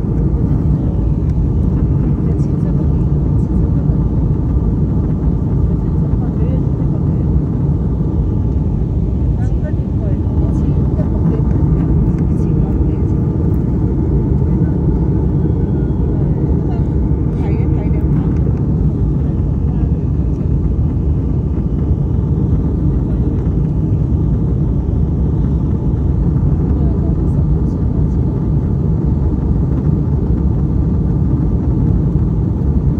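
Steady low roar of an airliner's cabin in cruise flight, the engine and airflow noise heard from inside at a window seat, unchanging throughout.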